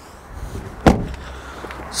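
The rear passenger door of a Land Rover Freelander being shut once, a single solid thud about a second in.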